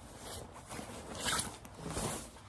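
Rustling and swishing of a padded winter jacket's fabric as it is handled and turned over, loudest a little past the middle.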